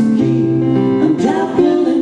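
Live acoustic guitar with male voices singing over it.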